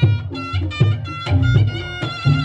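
Live Reog Ponorogo gamelan accompaniment. A slompret (reed shawm) plays a sustained, wavering melody over kendang drum strokes about twice a second.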